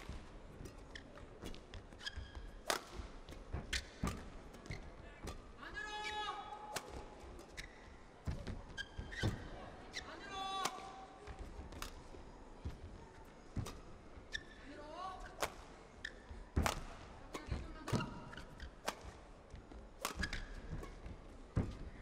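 Badminton rally: rackets strike the shuttlecock back and forth in sharp hits every second or so. Court shoes squeak briefly on the floor now and then.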